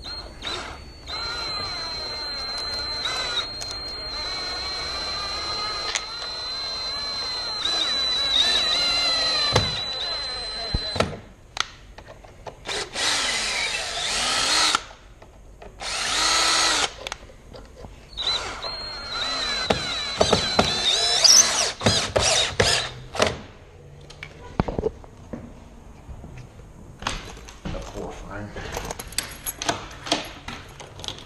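DeWalt 18-volt cordless drill driving screws into a wooden door jamb in several runs. A first run of about ten seconds carries a steady high whine whose pitch wavers as the screw goes in, then come two short bursts and another run about twenty seconds in. Light clicks and handling noise follow near the end.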